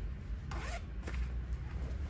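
Rustle and rub of a jacket's fabric being handled and folded by hand, with a short rustle about half a second in and a light click a little after a second.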